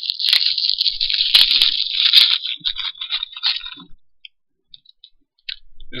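Plastic packaging crinkling and rustling as a packet of jelly is handled, a dense crackle with sharp clicks that thins out after about two and a half seconds and stops at about four, followed by a few faint ticks.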